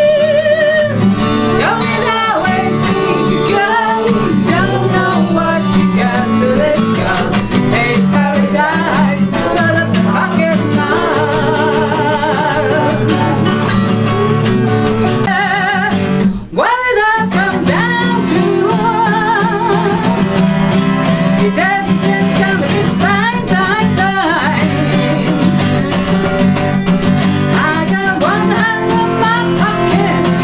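Live acoustic song: a woman singing, accompanied by two acoustic guitars. The sound drops out for a moment about halfway through.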